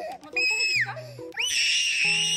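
A one-year-old baby crying hard after her vaccination shots: a short, high-pitched wail about a third of a second in, then a long, loud wail from about halfway through.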